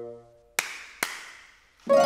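Opera orchestra: a held brass chord dies away, two sharp percussive strikes come about half a second apart, and the full orchestra with brass enters loudly near the end.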